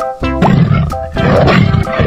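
A tiger roaring twice, each roar lasting about half a second, over background music.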